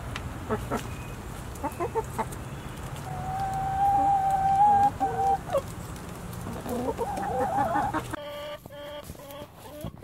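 Backyard chickens clucking as they forage, with one long drawn-out call lasting about two seconds near the middle.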